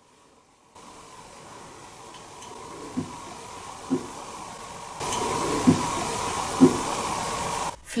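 Four dull knocks in two pairs, each pair about a second apart, heard over a steady hiss and faint hum that grow louder in steps.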